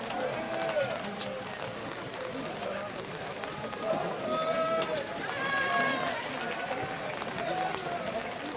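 A group of young male voices shouting out together, loudest and held longest around the middle, with scattered calls before and after.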